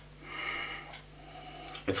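A man sniffing whisky in a nosing glass: one drawn-out inhale through the nose, under a second long.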